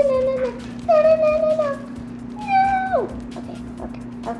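A young girl singing a few long held notes in a child's voice, the last one sliding down in pitch about three seconds in.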